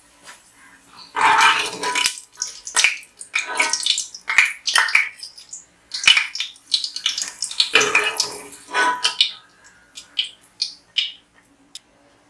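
Metal spoon scraping and clattering in a pot as fried cashews and raisins are scooped out of the oil, in a string of irregular scrapes and knocks.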